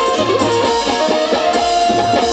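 Qawwali accompaniment: harmonium with steady held notes and a plucked Indian banjo (bulbul tarang) melody over tabla and dholak.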